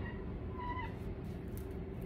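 A brief high-pitched squeak about half a second in, dropping in pitch at its end, over a steady low hum.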